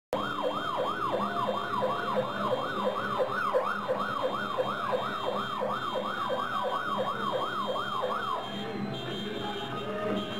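A siren yelping rapidly up and down, about three sweeps a second, cutting off about eight seconds in.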